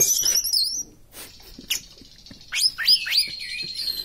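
Caged orange-headed thrush (anis merah) singing: a quick run of high chirps at the start, then a string of sharp down-slurred notes from about two and a half seconds in that run into a long, thin, steady whistle.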